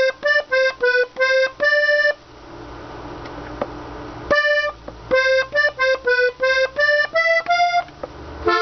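Hohner Corona II Classic diatonic button accordion tuned in G, played as a slow melody in short single notes on the treble buttons. About six notes come first, then a pause of about two seconds, then a quicker run of about ten notes.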